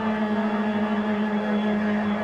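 A single low tone held steady in pitch, with fainter overtones above it: a sustained drone in the music over the closing titles.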